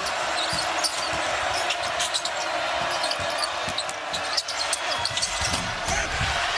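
Arena crowd noise under a basketball being dribbled on a hardwood court, with a string of short, sharp bounces.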